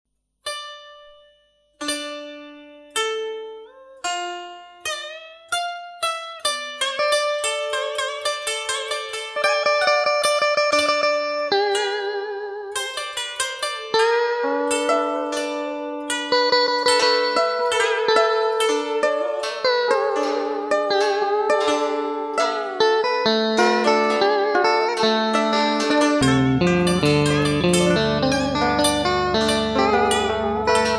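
Instrumental karaoke backing track in Vietnamese traditional style, led by plucked strings. It opens with single spaced notes, some of them bending in pitch, then builds into a denser melody, with a bass line coming in near the end.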